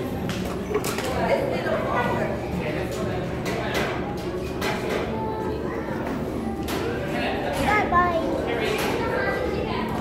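Indistinct chatter of children and adults in a busy indoor room, with a child's high voice rising and falling about eight seconds in and scattered small knocks.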